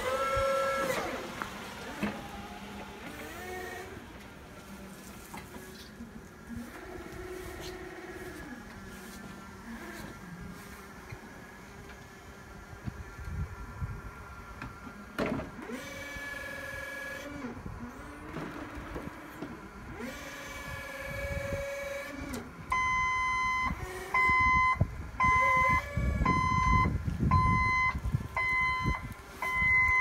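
Hyundai 18BT-9 electric forklift working, its electric motors whining up and down in pitch as it drives and lifts. From about 23 seconds in, its warning beeper sounds a steady, regular series of loud beeps.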